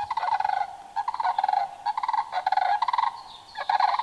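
Recorded sandhill crane unison call played on a small handheld device: a pair calling together in two different tones, repeated rolling, rattling bugles in several bouts about a second apart.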